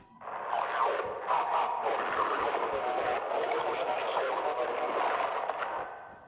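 Garbled, reversed logo soundtrack: a dense, steady wash of noise with voice-like streaks through it, coming in about a quarter second in and fading near the end.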